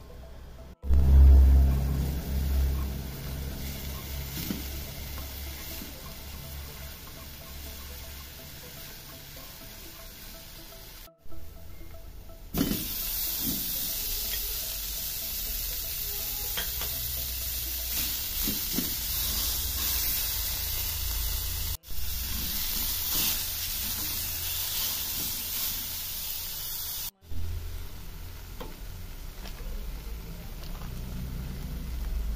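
Garlic and then ground beef frying in oil in a stainless-steel pan, sizzling. The sizzle is a steady hiss that gets much louder in the second half, and it is broken by several abrupt cuts. There is a brief low thump about a second in.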